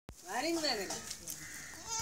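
Goats bleating: one call that rises and falls in pitch in the first second, a lower, shorter call after it, and a high-pitched call beginning near the end.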